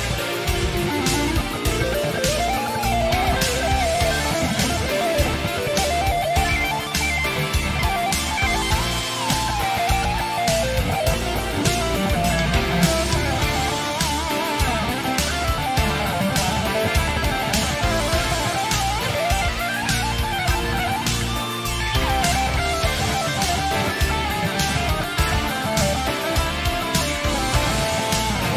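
Lead electric guitar improvising fluid legato runs with bent and wavering notes over a backing track with a steady drum beat.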